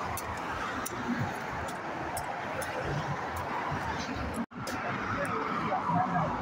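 Traffic noise from cars passing on the road, with a few sharp clicks typical of a machete striking a green coconut.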